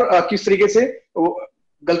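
A man talking in Hindi, in short phrases with a brief pause about one and a half seconds in.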